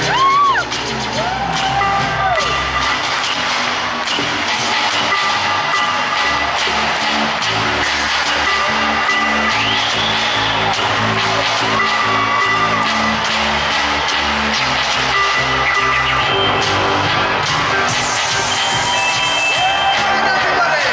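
Live synth-pop band playing through an arena PA: a pulsing synthesizer bass line and held synth chords, with a crowd cheering and whooping over it near the start and the lead vocal coming in at times.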